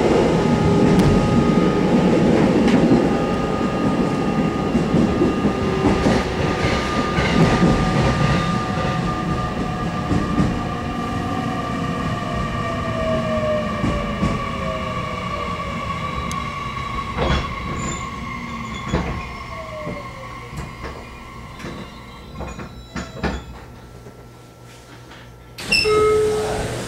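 Interior running sound of an 813 series electric multiple unit slowing down: rumble and motor whine that slide downward in pitch and fade. A few sharp wheel clicks come in the second half as the train runs along the platform.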